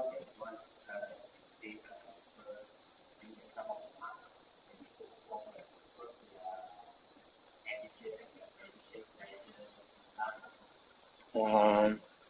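Faint, distant speech from someone off-microphone, under a steady high-pitched whine that runs throughout. Near the end a nearby voice gives a brief, louder hum.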